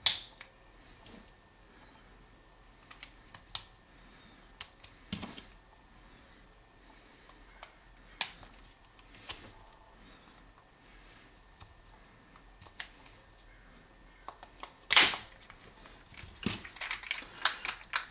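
Scattered small clicks of screwdriver bits being handled and pushed back into the bit magazine in the handle of a Wera Kraftform Kompakt ratcheting screwdriver, with a louder click about fifteen seconds in and a quick run of clicks near the end.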